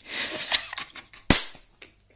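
Close rustling and a run of clicks on a handheld phone's microphone, with one sharp crack just over a second in, the loudest moment.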